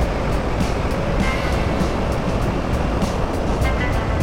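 Honda Africa Twin motorcycle riding on a gravel road: a steady rush of wind and road rumble, with background music with a steady beat mixed over it.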